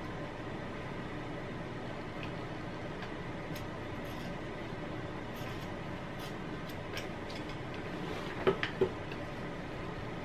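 Scissors cutting a sports bra's jersey-knit strap: faint snips over a steady room hum, with two sharper clicks near the end.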